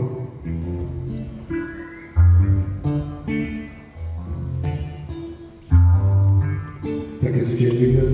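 Live band music led by acoustic guitar: chords plucked and strummed over loud low bass notes that come in blocks of about a second.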